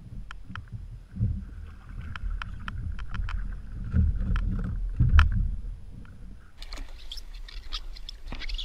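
A fishing kayak rocking on open water: low rumble and hull knocks, the heaviest about a second, four and five seconds in, with a scatter of sharp clicks from gear being handled. Towards the end a brighter, splashy hiss of water close to the microphone takes over.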